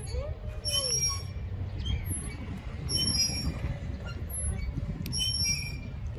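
Metal swing set squeaking as the swings go back and forth: short high-pitched squeals repeating about every two seconds, over a steady low rumble.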